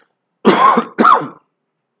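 A man clearing his throat twice, two short loud bursts about half a second apart.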